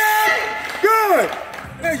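Shouted cheering: a long drawn-out 'yeah' at the start, another short shout about a second in, and 'there' near the end.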